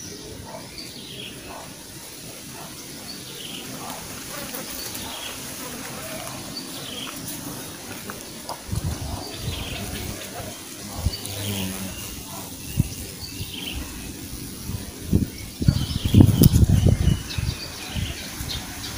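Small birds chirping in the background, short falling calls repeating about once a second. Low rumbling bursts come in the second half and are loudest about three quarters of the way through.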